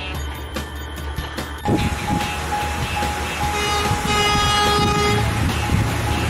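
Background music, then a train horn starts suddenly about two seconds in and holds a steady high note with short breaks, a lower second note joining for a second or two in the middle.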